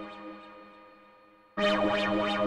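Experimental synthesizer drone music, a held chord with rhythmic sweeping pulses about twice a second, fading away to near quiet over about a second and a half and then cutting back in abruptly at full level near the end.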